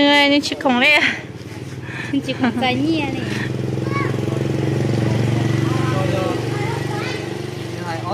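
Brief talking, then an engine running steadily close by, a low hum that swells to its loudest around the middle and eases off near the end.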